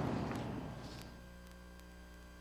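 Faint, low, steady electrical hum with a few thin steady tones above it, left in a short gap in the audio; a fading hiss dies away over the first second.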